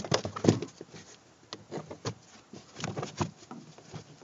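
Irregular clicks, knocks and rustling from things being handled around the plastic trim of a car's trunk, the loudest knock about half a second in.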